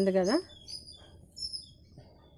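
Small birds chirping in the background: a scatter of short, high-pitched chirps.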